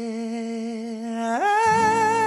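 A male singer humming one long held note, stepping up to a higher held note about a second and a half in, as a plucked acoustic guitar comes in near the end.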